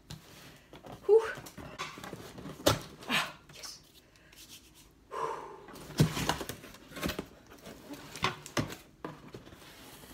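Cardboard shipping box being handled and opened: a series of short knocks, scrapes and flap rustles, with breathy exhales and a "whew" in between.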